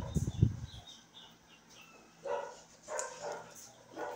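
Brief handling noise, then two short animal calls about two seconds in, under a second apart.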